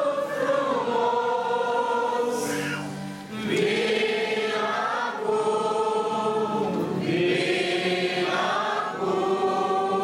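Congregation singing a hymn together in many voices, with long held notes and a short break between phrases about three seconds in.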